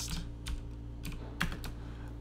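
Typing on a computer keyboard: a handful of sharp keystroke clicks in two short irregular runs, one at the start and another about one and a half seconds in.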